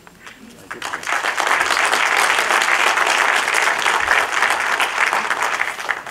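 Audience applauding, starting about a second in and continuing steadily.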